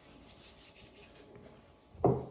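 Hands rubbing together, palm against palm, faint back-and-forth strokes.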